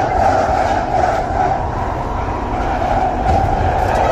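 London Underground train running, heard from inside the carriage: a loud, steady rumble of wheels on track with a strong midrange roar.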